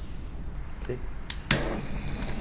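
Handheld butane torch being lit: a sharp ignition click about a second and a half in, then the flame hissing steadily.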